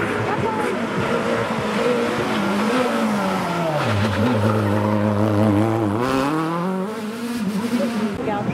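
Renault Clio rally car's engine under hard driving. The revs fall as it brakes for a tight bend, hold low through the turn, then climb again as it accelerates out, starting about two seconds before the end.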